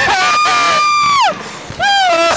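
Riders screaming while flung on a slingshot (reverse-bungee) amusement ride: one long high scream held on a single pitch, which breaks off and slides down about a second in, then another yell starts near the end.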